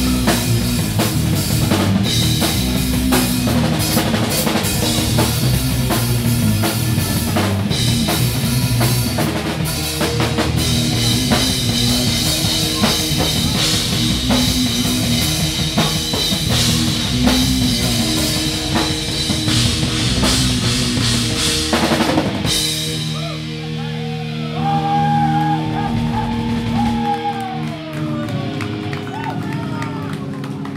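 Live rock band playing loud, with distorted electric guitar and a pounding drum kit. About three-quarters of the way through, the drums stop and a held guitar chord rings on, with wavering, sliding high tones over it, as the song ends.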